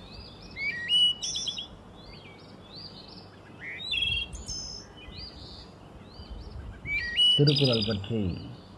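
Small birds chirping, a busy run of short rising notes repeated again and again, loudest about a second in. A man's voice comes back near the end.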